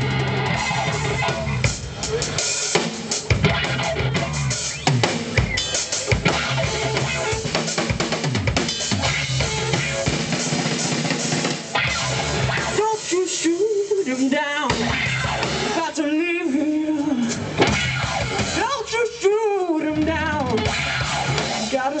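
Live rock band playing an instrumental passage: electric guitar, electric bass and drum kit. For the first half the whole band plays densely; from about halfway the backing thins and long held notes with a wide waver stand out.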